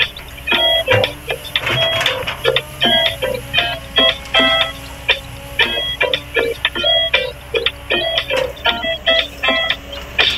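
Background music: a quick, busy melody of short, bright notes, several to the second.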